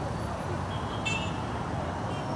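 Busy street traffic: a steady hum of motorcycles and cars with background crowd voices, and one short, high horn beep about a second in.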